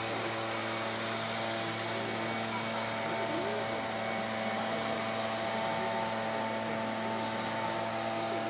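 Steady machine-like hum made of several held tones over a constant hiss, with a faint murmur of distant crowd voices from a busy park.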